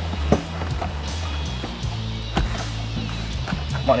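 Background music with a steady bass line, with a few sharp clicks over it.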